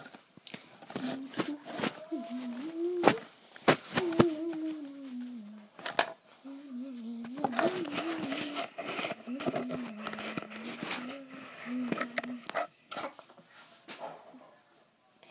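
A young girl humming a long, wavering low tune, with several sharp clicks and knocks from handling things close to the microphone.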